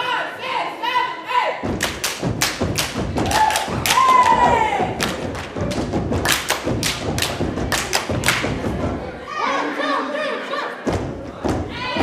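A step team stomping and clapping in rhythm: a rapid run of sharp thumps and claps that starts about two seconds in and stops about nine seconds in, with audience voices shouting over it and again near the end.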